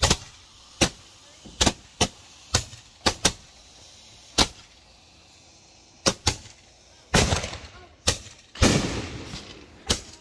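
Handheld Roman candle firing: about a dozen sharp pops at uneven intervals, then two louder, longer blasts near the end that each die away over about a second.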